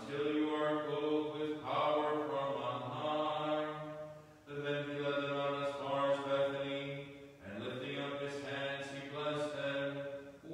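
A man chanting in Byzantine style, holding long sustained notes, with short breaks for breath about four and a half seconds in and again about seven and a half seconds in.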